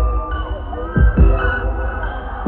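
Live concert music played loud over a festival sound system: held synth tones over deep bass, with heavy bass thumps about a second in.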